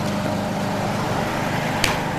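A steady low machine hum, like a nearby motor running, with a single sharp knock near the end.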